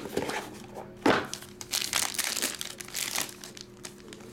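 Cardboard box and plastic card bag being handled by hand: irregular crinkling and rustling, with a sharp, louder rustle about a second in.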